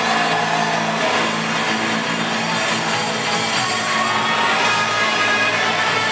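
Rock band playing loudly in a small club, recorded from within the audience, with the crowd faintly cheering.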